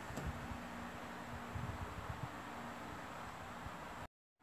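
Quiet background hiss with a faint steady hum and a few soft low knocks; the sound cuts off abruptly right at the end.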